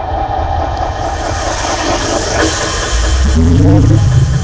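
A bus engine running with a steady low rumble, mixed with street noise; a rising tone comes in near the end.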